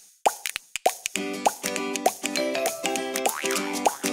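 Bright, upbeat children's jingle with cartoon pop sound effects: a few quick pops in the first second, then bouncy chords punctuated by short rising bloops.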